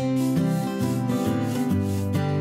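Light acoustic-guitar background music, with a rubbing sound over it: a paintbrush dragging thick paint along a clay surface.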